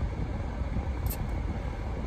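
Steady low vehicle rumble heard from inside a car cabin, with a faint click about a second in.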